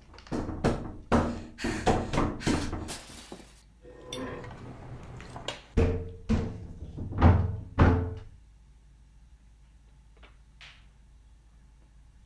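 A wooden panelled door shoved and its handle worked, thudding and rattling in its frame in a run of irregular heavy thumps that stops about eight seconds in.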